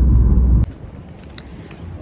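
Low rumble inside a car's cabin that cuts off abruptly about half a second in, leaving a much quieter outdoor background with a faint click or two.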